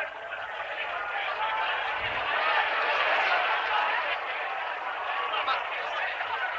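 Steady murmur of many voices talking at once, a crowd's chatter with no single clear speaker.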